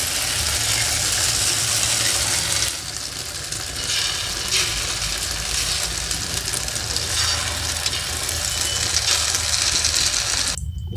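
Omelette batter sizzling in hot oil on a tawa, a steady hiss that eases a little about three seconds in, with a steady low hum underneath and a spatula scraping as the batter is spread.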